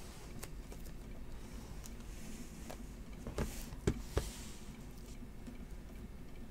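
Hands handling a stack of cardboard trading-card boxes: a few light taps and knocks, the loudest about four seconds in, over a steady low room hum.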